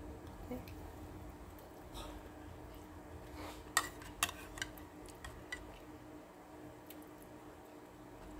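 Metal spoon clinking and scraping lightly in a bowl of soup, a few short clicks around the middle, over a faint steady hum.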